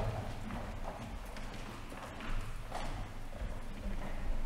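Footsteps of several people walking on a tiled floor: irregular clicks of hard shoes and heels, a few steps a second.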